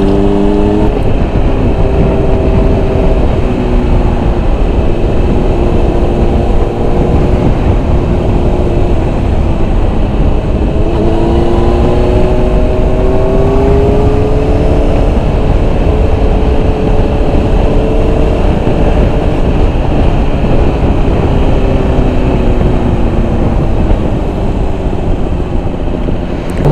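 Sport-bike engine under way, its pitch climbing and falling with the throttle, with one long climb about halfway through, all under heavy wind rumble on the microphone.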